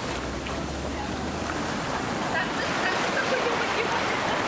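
Small waves breaking and washing up onto a sandy beach: a steady surf wash.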